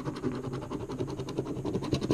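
Yellow plastic scratching tool rubbed quickly back and forth over a scratch-off lottery ticket, scraping off the coating in a fast run of short, rasping strokes.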